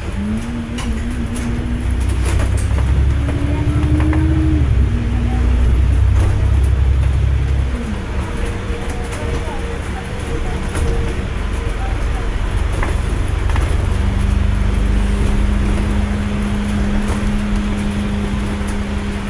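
Bus engine and drivetrain heard from inside the moving bus: a heavy low rumble with a whine that climbs in pitch as it pulls away and gathers speed, easing off about 8 seconds in, then a steadier hum with a held whine near the end. Light rattles from the bus interior throughout.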